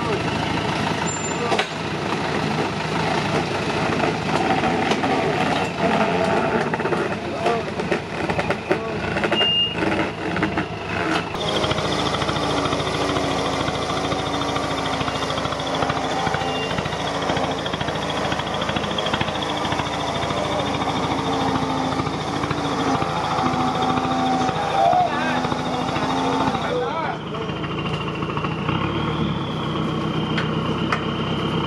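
Modified off-road 4x4's engine running while the vehicle sits stuck in a muddy rut, with people's voices over it. From about a third of the way in a steady high whine joins and holds on.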